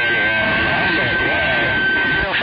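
CB radio receiver audio with several stations keyed up at once over skip. The voices come through garbled and overlapping, under a steady high whistle of a heterodyne tone.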